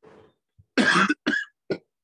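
A person coughing three times in quick succession, the first cough the loudest and longest.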